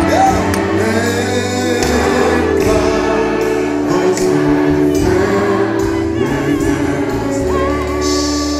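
A church congregation and worship team singing a gospel hymn together, with a live band playing sustained low bass notes underneath. Near the end, a single voice holds a wavering note above the group.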